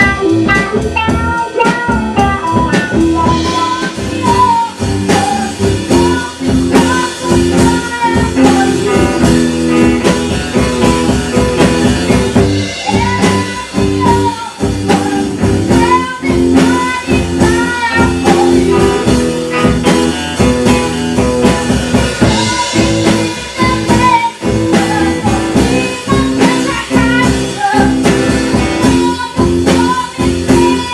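A classic rock and country band playing a blues-tinged number: guitar to the fore over a drum kit keeping a steady beat.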